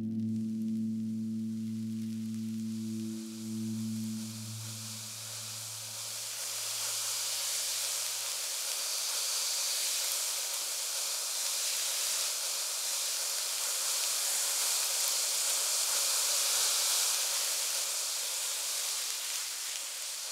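Fine sand pouring in a stream through the holes of a metal colander, a steady hiss that grows in over the first few seconds and holds.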